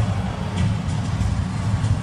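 Low, steady rumble of military trucks driving past, mixed with background music.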